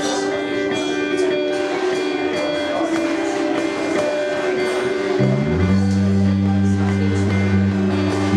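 A live band playing the opening of a song: electric guitar notes over drums, with the bass guitar coming in about five seconds in and holding low notes.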